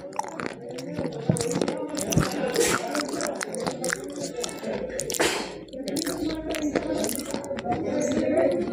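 Close-miked chewing and crunching of a white chalky substance: many short, crisp crunches and mouth clicks, with one longer crunch about five seconds in, over a steady murmur underneath.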